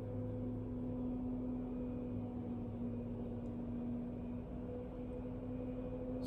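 A steady low hum with a few held tones. The clearest of them drops out about four seconds in and comes back near the end.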